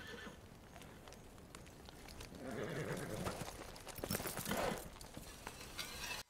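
Agitated horses whinnying and stamping on a TV drama soundtrack, played back quietly and growing louder about halfway through.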